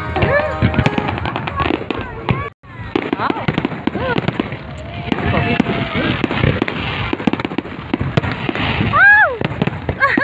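Fireworks display: a rapid, irregular run of bangs and crackles from aerial shells bursting, with the voices of a watching crowd. The sound drops out briefly about two and a half seconds in.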